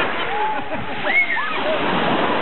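Small waves washing and splashing onto a pebble shore as a steady rush, with distant high-pitched voices calling out from the water about half a second in and again just after a second in.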